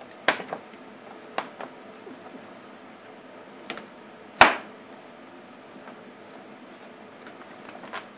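A small metal nut and bolt being handled and threaded by hand in a mounting hole in a scooter's plastic fairing: a few sharp clicks and taps, with one much louder knock about four and a half seconds in.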